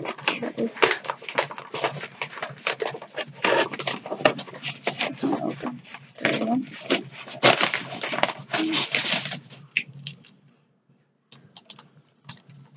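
Indistinct, muffled talking mixed with crackly rustling and sharp clicks. The sound drops to near silence about ten seconds in, then a few single clicks follow.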